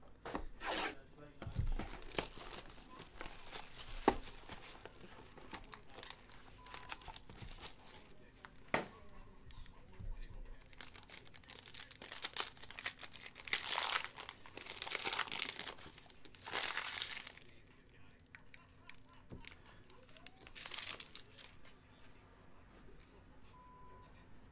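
Plastic wrapping on a trading-card box and foil card packs being torn open and crinkled, in several bursts of tearing, the longest about halfway through, with a few sharp clicks from handling the box and cards.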